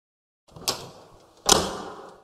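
Two short swish-like sound-effect hits of an animated logo intro, one about two-thirds of a second in and a louder one about a second and a half in, each fading out over about half a second.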